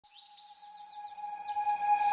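Bird chirps, a quick run of short falling notes, over one steady held tone, fading in as the opening of an intro music track.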